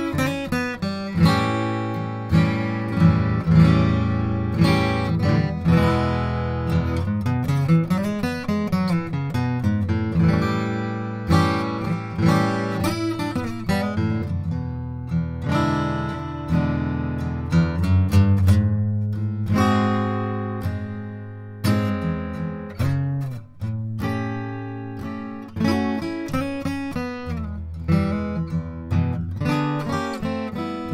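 Goodall Traditional Rosewood Dreadnought acoustic guitar, with an Adirondack spruce top and East Indian rosewood back and sides, played solo: a steady run of picked notes and chords, each struck sharply and left to ring on over sustained bass notes.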